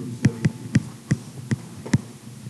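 Stylus tapping against a digital writing surface as a word is handwritten: about six short, sharp knocks in two seconds, at uneven intervals.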